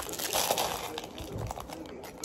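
Packaging rustling and crinkling as it is handled, loudest in the first half second.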